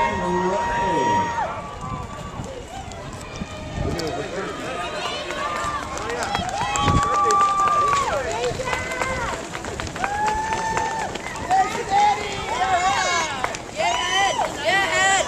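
A pack of road-race runners streaming past on pavement, their footfalls mixed with spectators' shouting and cheering. A long steady horn tone, the start signal, ends about a second in.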